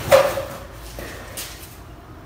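Movement noise from a child exercising with an inflated rubber balloon: a single sharp thump just after the start, then a brief scuff about halfway through.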